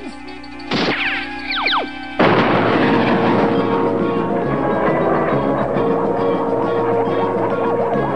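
Cartoon soundtrack music with sound effects: a short hit and several quick falling whistles about a second in, then from about two seconds in a loud, dense rushing sound under sustained music.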